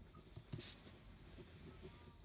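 Ballpoint pen writing on a sheet of paper: faint scratching of handwriting strokes.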